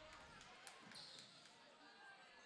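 Near silence: faint gym ambience with distant voices and a few faint taps of a basketball being dribbled up the court.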